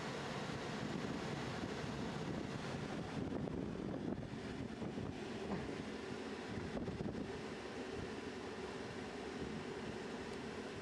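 Steady rushing roar with no clear pitch: wind buffeting the microphone over the burning of a homemade waste-oil water-heater burner.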